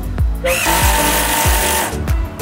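A power tool runs with a steady whine for about a second and a half, starting about half a second in. It plays over background music with a regular beat.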